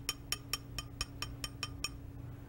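A heavy metal bar opener tapping lightly and rapidly on an upside-down pint glass, about six small clinks a second, nudging the glass back down onto the glass beneath. The tapping stops just before the end, over a steady low hum.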